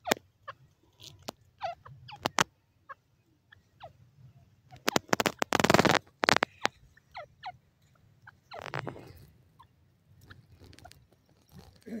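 Grey francolin pecking at dry, sandy ground: a scatter of short, sharp taps, with a louder, denser burst of sound about five to six seconds in.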